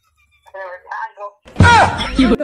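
Brief speech, then about one and a half seconds in a sudden, much louder burst with a deep low end and a falling pitch.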